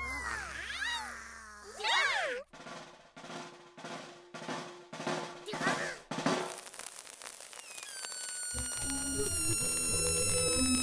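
Cartoon soundtrack: squeaky, sliding character voices for the first couple of seconds, then a run of evenly spaced drum taps about two a second, then music with held high tones coming in near the end.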